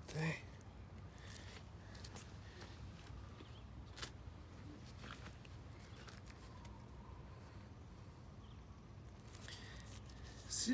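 Faint rustling and a few light clicks as hands press and handle the plastic grafting wrap around a grafted pear stump, with one sharper click about four seconds in and a brief murmur at the very start.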